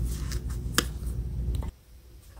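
A steady low hum with a few sharp clicks, one standing out about a second in; the hum cuts off suddenly near the end.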